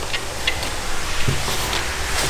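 Steady hiss of workshop background noise, with a few faint light clicks as paint swatch cards are lifted off their hooks and handled.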